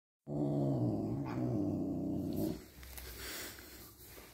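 A domestic cat's low warning growl, held for about two seconds and dipping slightly in pitch partway through, then trailing off into softer sounds. It is a growl aimed at another cat over food on the floor.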